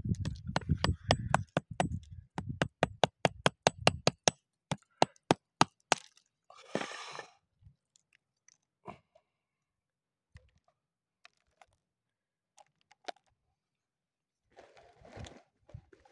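Small stones and gravel clicking and knocking together as hands sort through them: a fast, even run of sharp clicks for about six seconds, then a short crunchy rustle and a few scattered clicks.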